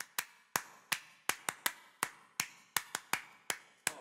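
A series of sharp clicks or taps, about fifteen in four seconds, irregularly spaced, each dying away quickly.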